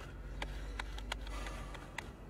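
A handful of light, sharp clicks and taps from small objects being handled, spaced irregularly, over a low steady hum.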